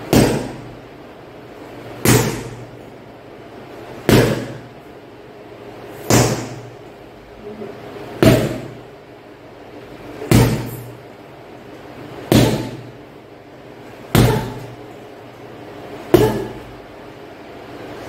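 Kicks landing on a heavy hanging punching bag at a steady pace: about one thud every two seconds, nine in all, each fading over about half a second.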